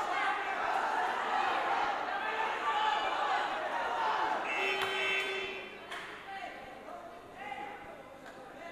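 Overlapping voices of people talking in a large hall, with a brief tone about five seconds in; the talk then drops to a quieter murmur.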